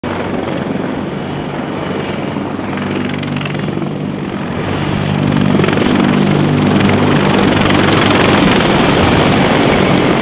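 Marine CH-53 heavy-lift helicopter flying low overhead: a steady rotor beat with turbine noise. It gets louder about halfway through as the helicopter passes close above.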